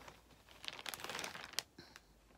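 Faint crinkling and rustling as skeins of embroidery floss are handled and sorted by hand, a scatter of light rustles and small clicks through the middle.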